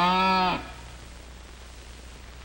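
Cartoon animal call: one short held note with a slight upward bend in pitch, cutting off about half a second in. Faint soundtrack hiss follows.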